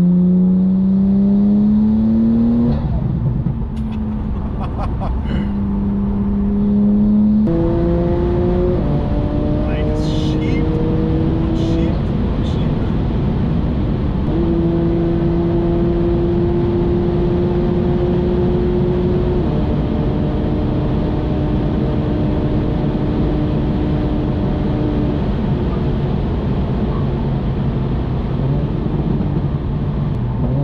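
Cabin sound of a 9ff-tuned Porsche 911 (991.2) Turbo S at high speed: the twin-turbo flat-six drones under heavy road and wind noise. Its pitch drops back twice in the first ten seconds, then climbs slowly as the car pulls from about 215 to 240 km/h.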